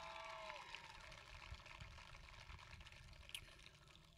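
Near silence: faint outdoor background, with a few faint steady tones fading out within the first second.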